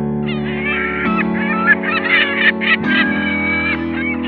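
Background music with sustained chords. From just after the start until near the end, a run of short, wavering bird calls sounds over it.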